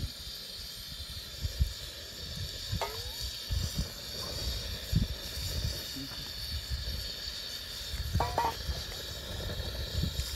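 Steady hiss of eggs frying in a pan over a gas burner, with irregular low rumbles through it and two brief high-pitched sweeps, one about three seconds in and one near the end.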